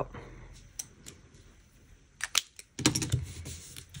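Light handling clicks and taps of a pen and a disc-bound planner being moved on a table: a couple of sharp clicks about two seconds in, then a short cluster of clicks and soft knocks a moment later.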